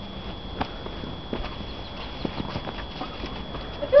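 Irregular soft crunches and knocks of packed snow being scooped and pushed by gloved hands on a car's roof and window.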